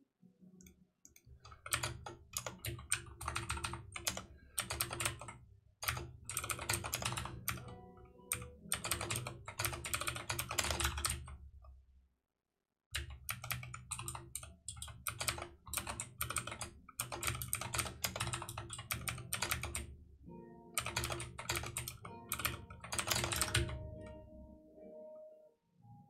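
Fast typing on a computer keyboard: runs of rapid keystrokes in bursts, breaking off briefly about halfway through before going on.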